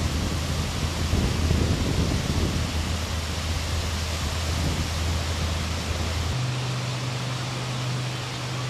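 Steady rushing noise of lakeshore wind and waves on the camcorder microphone, with a low steady hum underneath that steps up in pitch about six seconds in.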